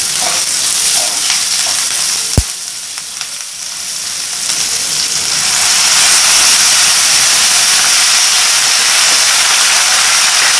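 Onions and dried red chillies frying in hot oil in a non-stick kadai, sizzling as they are stirred, with a single sharp knock about two and a half seconds in. Just past halfway, water poured into the hot pan sets off a louder, steady sizzle and bubbling.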